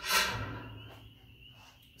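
Hinged steel smokestack of a reverse-flow offset smoker swung down onto its welded brace: a single metal clank right at the start that fades away over about a second.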